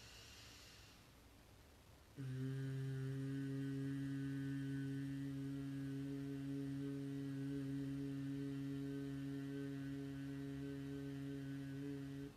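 A woman humming one long, steady low 'mmm' on a single pitch for about ten seconds, starting about two seconds in after a soft in-breath: the closing M sound of Om chanted in Udgita breathing.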